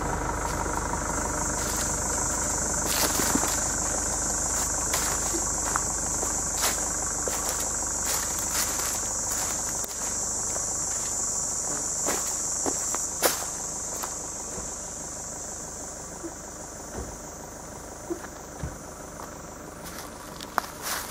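A continuous high, shrill buzzing of cicadas in summer woodland, easing off somewhat in the last few seconds, over a low steady rumble. Scattered clicks and footfalls on the dirt come through as the camera is carried along.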